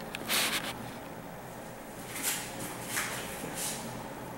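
A man's short, sharp breaths through the nose, four or five quick hissy puffs, while he holds flexed poses.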